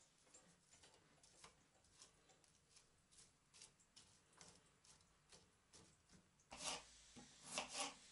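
Near silence, with faint scattered light clicks and two short, faint scraping sounds near the end.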